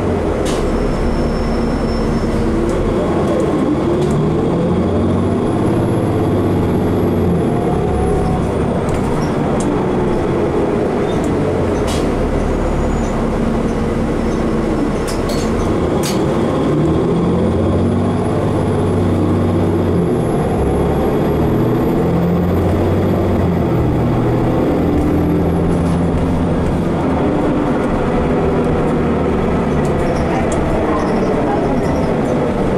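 Interior of a 2015 Nova Bus LFS city bus under way: steady engine, drivetrain and road noise, with a whine that rises and falls as the bus speeds up and slows, and a few sharp rattles and clicks from the body.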